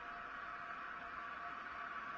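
Faint, steady hiss like static, with a faint steady tone underneath.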